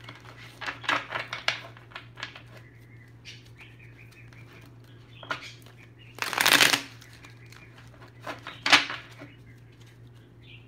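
Tarot cards being shuffled and handled on a tabletop in short bursts of rustling and flicking, the loudest a dense burst about six and a half seconds in, over a steady low hum.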